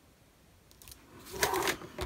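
Paper card being handled on a cutting mat: near silence at first, then a short rustle and scrape about a second and a half in.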